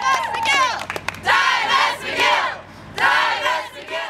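A crowd of protesters cheering and shouting together, surging loudest about a second in and again near three seconds.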